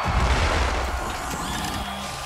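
Film sound effects of robotic arms whirring and clanking as they strip the Iron Man armour off its wearer, a busy mechanical clatter with servo whines.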